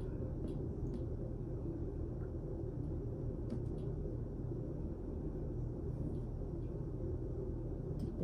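Quiet room tone: a steady low hum, with a few faint ticks.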